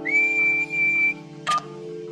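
A single whistled note, high and steady with a slight rise at the start, held for about a second over a sustained chord of background music. A short blip follows about a second and a half in.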